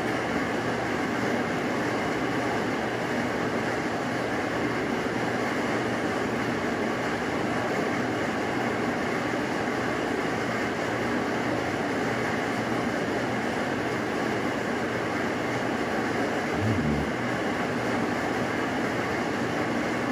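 A steady, even rushing noise with no clear pitch or rhythm, like air moving from a fan or blower.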